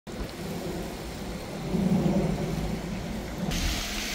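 Outdoor rumble, with a low hum that swells about two seconds in and a hiss that suddenly grows louder about half a second before the end.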